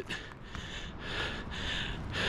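A man breathing close to the microphone, a few soft breaths that swell and fade between his phrases.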